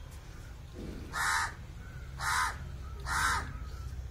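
A crow cawing three times, about a second apart, each caw short and harsh.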